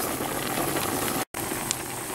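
A large pot of mutton in water boiling hard over a wood fire, a steady bubbling hiss that cuts out for an instant just over a second in.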